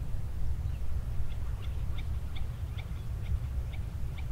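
Low, steady wind rumble, with a faint run of short high chirps, about three a second, from about a second in until near the end.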